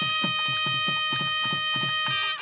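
Temple procession music: a wind instrument holds a steady note over a quick, even drumbeat of about five strokes a second.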